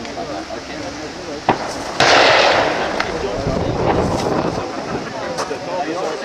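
A single shot from a Werder M/69 falling-block rifle, firing its 11.5 mm black-powder cartridge, about two seconds in: a sudden loud report and a rush of noise that dies away over about a second. Sharper, fainter cracks come just before and after it.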